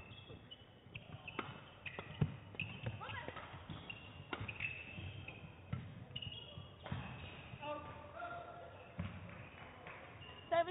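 Badminton rally: rackets hitting the shuttlecock in sharp, irregular cracks about every half second to a second, with short high squeaks of court shoes on the floor between the hits. A brief voice call comes near the end.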